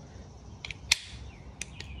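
A few faint clicks and taps from handling a homemade soft wash gun with a ball valve and brass quick connect. The sharpest click comes about a second in.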